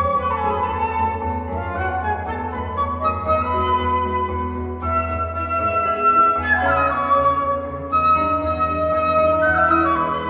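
Two concert flutes playing a flute duet of held melodic notes, with digital piano accompaniment underneath.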